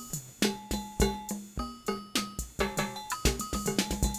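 A Roland TR-606 drum machine and a Korg DDM-220 Super Percussion playing in sync: rhythmic drum hits mixed with short pitched percussion tones. The two keep locked together while their shared tempo is changed.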